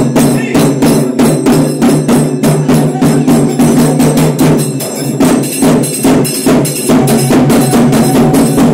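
Loud, fast drumming at an even beat of about four strikes a second, with a steady low tone underneath.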